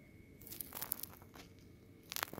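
Faint handling noise: a gloved hand rubbing and clicking against the battery module's wires and plastic housing, a scatter of small crackles lasting about a second.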